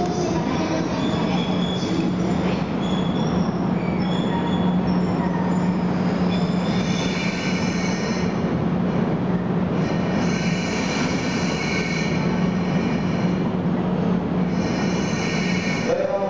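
EF64 electric locomotive and its sleeper train creeping into a terminus platform and braking to a stop, with a steady low hum under high-pitched squeals of wheels and brakes that come and go in several long patches, strongest in the second half.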